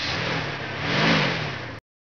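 Car sound effect: a car engine driving by, swelling to its loudest about a second in and fading, then cutting off suddenly near the end.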